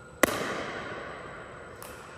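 A pickleball paddle hits the ball with a loud, sharp pop about a quarter second in, ringing on in the echo of a large indoor court hall. A much fainter hit follows near the end.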